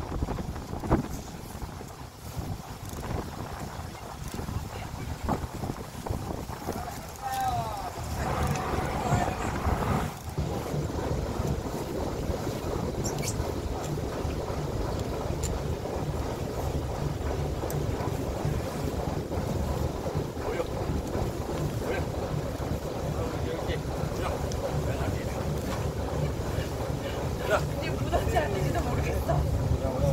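Wind buffeting the microphone aboard a small fishing boat, with a steady low rumble that thickens from about ten seconds in. Scattered knocks come early on, and brief voices are heard.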